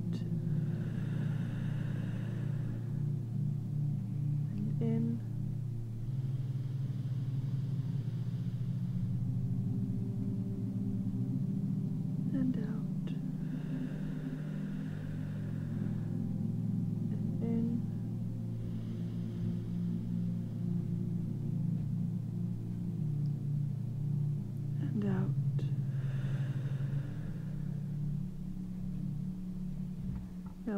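Ambient meditation music: a steady low drone of held tones. Over it, slow deep breaths come in and go out about every six seconds, each a soft rush of air lasting a couple of seconds.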